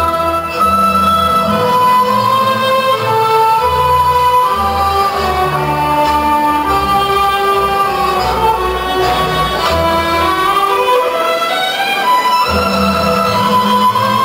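Instrumental Romanian folk dance music: a melody in held, stepping notes over a steady, pulsing bass accompaniment.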